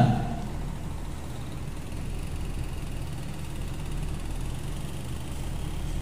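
A steady low rumble of background noise, with no voice in it.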